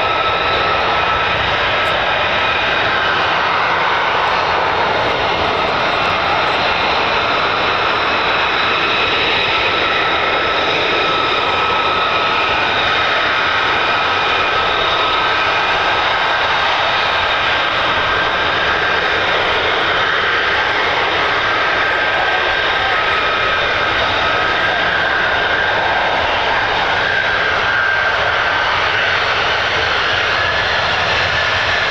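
Lockheed Martin F-35A Lightning II's jet engine running at taxi power as the fighter taxis past: a loud, steady jet roar with high whining tones, which edge slightly higher about halfway through.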